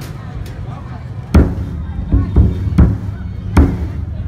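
Large barrel drum struck five times in an uneven pattern, deep and ringing briefly: a single beat about a second in, a quick run of three, then one more near the end, over a background of crowd chatter.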